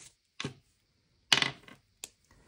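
Two knocks of small hard objects set down on a wooden tabletop, a quieter one and then a louder, sharper one about a second later with a brief rattle.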